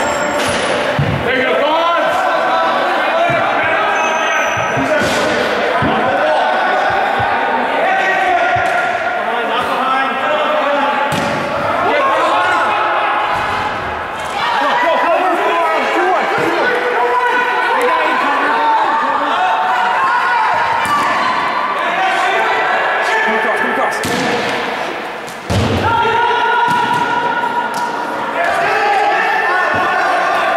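Broomball game in an ice rink: players' voices calling and shouting over one another, with scattered hollow knocks of brooms striking the ball and boards, echoing in the arena.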